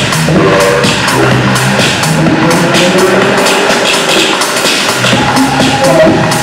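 Live minimal techno played loud over a club sound system: quick, steady hi-hat ticks over a pitched bass line. The deepest bass drops away for about a second and a half around the middle and then comes back.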